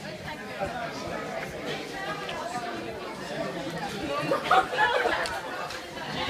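Several people chatting at once, voices overlapping into general conversation, with a nearer voice standing out louder in the last couple of seconds.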